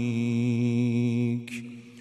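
A man's voice singing an Arabic devotional nasheed through a microphone, holding one long steady note that dies away about one and a half seconds in, followed by a short breath.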